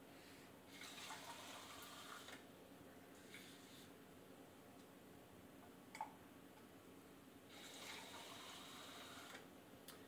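Kitchen faucet running faintly into a plastic cup, twice: about a second in and again near the end. A single short click, a cup set down on the counter, falls about midway.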